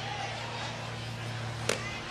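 Steady stadium crowd ambience with a low hum, and a single sharp crack near the end as the pitched baseball meets the batter's swing at home plate.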